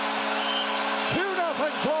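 Arena goal horn sounding one steady held chord over a cheering crowd, marking a home-team goal.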